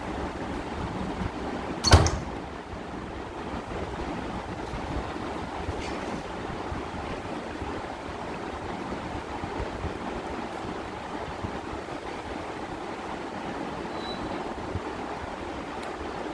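Steady background noise with one sharp click about two seconds in and a fainter click near six seconds.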